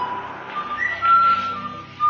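Soft background instrumental music: a single pure, whistle-like melody line holding long notes and stepping up and down in pitch.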